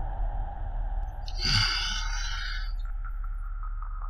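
Low steady rumble, with one short raspy, breathy sound like a wheeze or sigh about a second and a half in.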